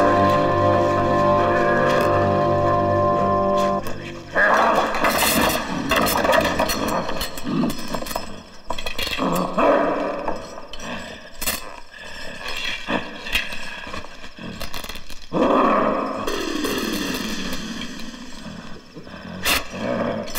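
Film soundtrack: sustained music chords that cut off about four seconds in. Then comes an uneven stretch of growling, roar-like cries and scuffling from a struggle, loud in bursts.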